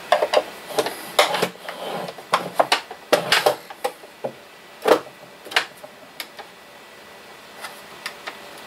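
Hard plastic clicks and knocks from handling a road barricade lamp, its lamp head lifted off the battery case and pressed back on, with the loudest knock about five seconds in and the clicking dying away after about six seconds.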